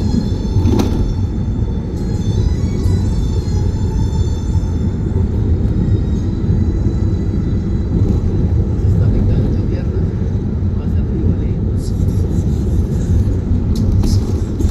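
Steady low road and wind rumble of a car driving at highway speed, with music and a voice playing over it.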